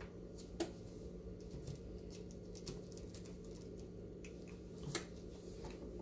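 Quiet handling of sublimation paper and heat tape being smoothed and pressed onto a mouse pad blank, with two small sharp clicks, one about half a second in and one near the end, over a steady low hum.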